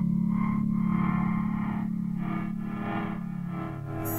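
Electronic music: a steady low drone under swelling, overlapping tones that rise and fade, the whole growing slightly quieter toward the end.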